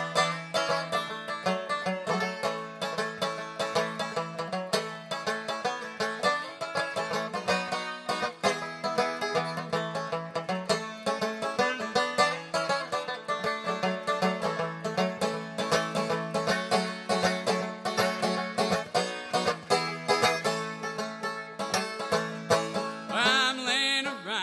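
Banjo picked at a steady, rhythmic pace as the instrumental intro to an old-time jug-band song, with a repeating low note under the melody.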